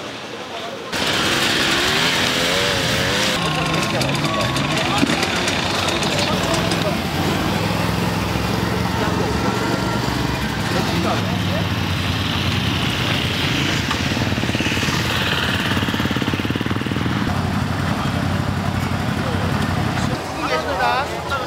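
ATV engines running steadily, mixed with people talking. The sound starts abruptly about a second in.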